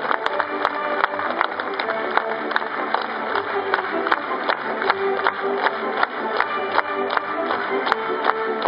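Music with held notes and frequent sharp taps.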